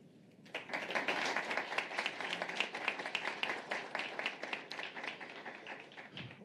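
Audience applauding, starting about half a second in and slowly tapering off toward the end.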